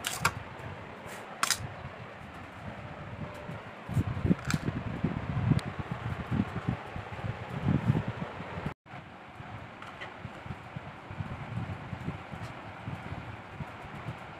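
Steady whirring background noise, with a few sharp clicks and irregular low bumps from about four to eight seconds in. The sound drops out for an instant near the nine-second mark.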